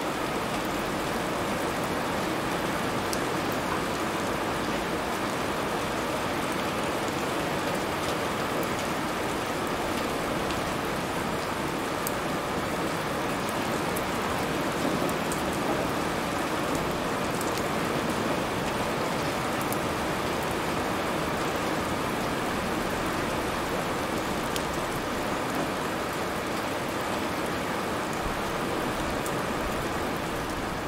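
Steady hiss of rain falling, with scattered faint ticks of drops.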